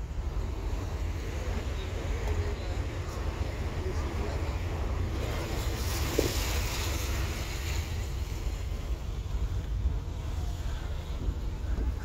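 Car cabin noise while driving on wet streets: a steady low rumble of engine and road, with a swell of tyre hiss about five to seven seconds in as a bus passes close alongside.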